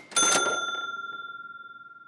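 A single bright bell-like chime struck once, ringing on and slowly fading over about two seconds before it is cut off: a logo-intro sound effect.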